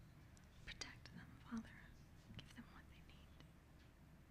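Near silence with faint whispered voices: congregation members quietly adding their own prayers, with a few small clicks over a low room hum.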